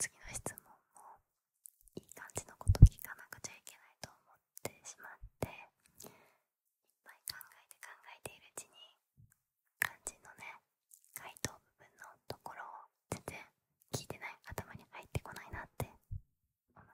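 A woman whispering close to the microphone, with scattered mouth clicks and one sharp thump about three seconds in.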